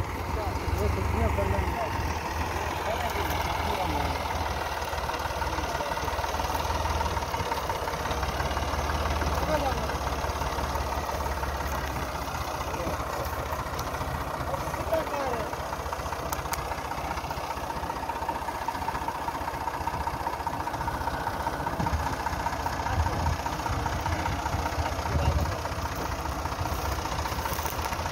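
Massey Ferguson 260 tractor's three-cylinder diesel engine idling steadily.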